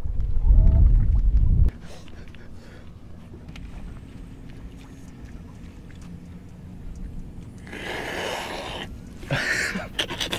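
Wind buffeting the microphone with a loud low rumble, which cuts off about a second and a half in. A quieter stretch with a faint steady low hum follows, broken near the end by a short rushing hiss.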